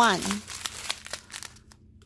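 Small plastic bags of diamond-painting drills crinkling as they are handled and sorted, a run of irregular crackles that dies away near the end.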